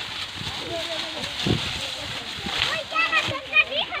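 Children's voices calling and chattering, over the crackling rustle of dry sugarcane leaves being gathered up by hand. The voices are loudest in the second half.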